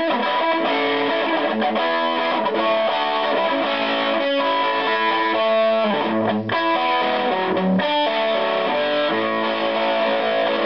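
Electric guitar played through a germanium PNP fuzz pedal, switched on: a continuous run of fuzzy, distorted notes and chords, with a brief drop about six and a half seconds in.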